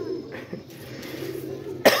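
Domestic pigeons cooing in a low murmur, then a man coughs loudly near the end.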